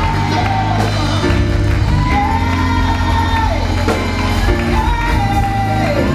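Church choir singing gospel music with instrumental backing, a lead voice holding long notes that slide down at their ends over a steady bass line.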